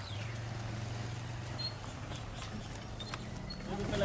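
Roadside street ambience: a low vehicle engine hum that fades out about halfway through, with a few faint short bird chirps and light clicks.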